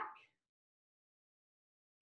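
Near silence: a spoken word trails off at the very start, then the sound is completely dead, without even room tone.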